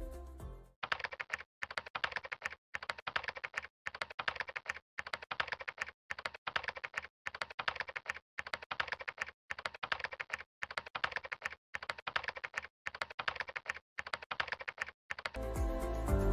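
Computer keyboard typing sound effect: about a dozen bursts of rapid key clicks, each roughly a second long, separated by brief silences. Background music fades out at the start and comes back in just before the end.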